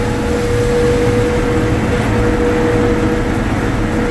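Gleaner M2 combine running steadily while harvesting soybeans, heard from inside the cab: a constant low drone with a steady whine over it.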